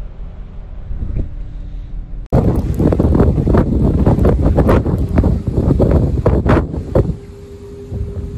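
Research icebreaker under way: a low steady rumble with wind on the microphone. About two seconds in it turns suddenly loud, with irregular crunching and cracking as the ship pushes through pack ice. Near the end it falls back to a steady hum.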